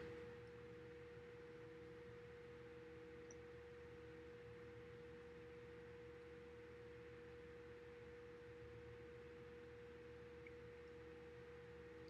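Near silence: room tone with a faint, steady, single-pitched hum that does not change.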